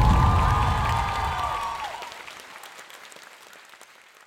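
A crowd of guests applauding. A held note rings over the clapping for about the first two seconds. The whole sound then fades away steadily toward the end.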